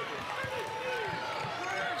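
Basketball dribbled on a hardwood arena court, with players' running footfalls and background arena crowd voices.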